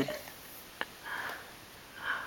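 A soft breath through the nose, a sniff, about a second in, with a single faint click just before it and another sniff starting at the very end.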